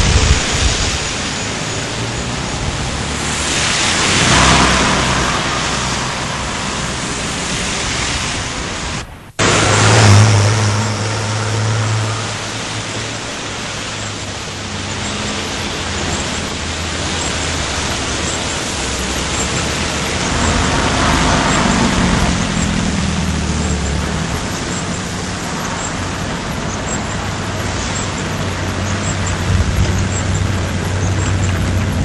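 Road traffic on a wet street: cars and buses passing with engine drone and tyre hiss, swelling as vehicles go by about four seconds in and again around twenty-one seconds. The sound breaks off briefly about nine seconds in, then a deeper engine hum comes in.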